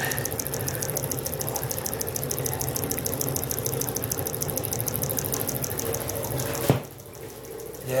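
Homemade microwave-transformer pulse motor running, its magnet rotor spinning past the coil with a fast, even pulsing of about seven beats a second. A sharp click comes near the end, after which the sound is much quieter.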